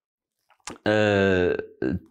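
A man's drawn-out hesitation sound, a held 'eee' on one steady pitch lasting under a second, preceded by a small mouth click.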